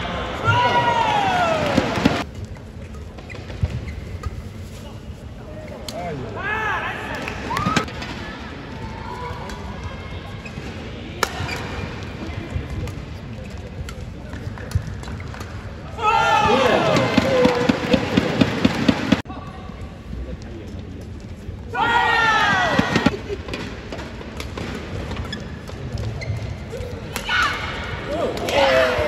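Spectators in a badminton arena shouting and cheering in loud swelling bursts, with a fast rhythmic clatter in the middle of one burst and sharp racket hits on the shuttlecock between them.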